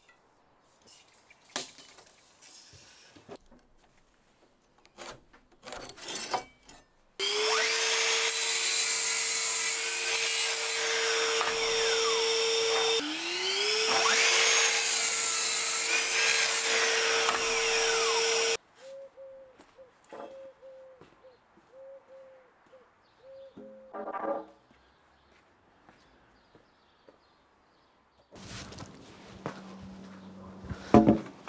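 A sliding compound mitre saw cuts timber to length. About seven seconds in, the motor spins up to a steady whine and the blade rasps through the wood. It spins up again for a second cut that stops suddenly near the middle. Light knocks of wood being handled come before and after.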